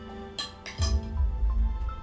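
Soft background music with sustained tones, over which a metal tray and cooking pot give two light clinks about half a second in. A deep low rumble then swells and is the loudest sound for the rest of the moment.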